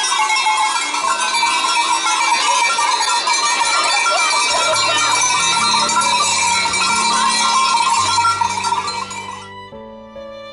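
Many bells clanging together on a herd of Valais Blackneck goats walking past, a dense jangle of overlapping ringing tones. The bell sound cuts off suddenly near the end.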